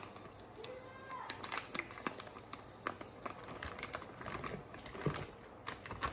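Plastic bag of powdered casting stone crinkling as it is tipped and shaken out into a plastic bowl of water: a quiet, irregular scatter of light crackles and ticks.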